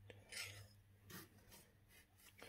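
Near silence, with two faint brief rubbing sounds, about half a second and just over a second in, from an aluminum bullet mold block and its steel sprue plate being handled.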